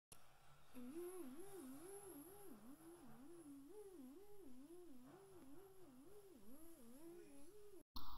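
Faint humming: a single tone wobbling evenly up and down about twice a second, starting about a second in and stopping just before the end.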